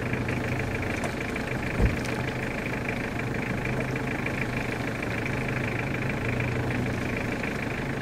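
Engine of a Mitsubishi 4x4 running steadily as it crawls through snow and muddy ruts, with a single low thump about two seconds in.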